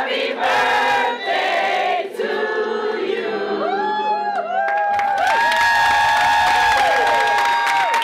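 A roomful of people singing a birthday song together in unison. The song ends on one long held note over the last few seconds.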